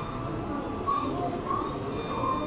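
Steady background din of a busy electronics shop, with faint distant voices and a thin, high steady tone.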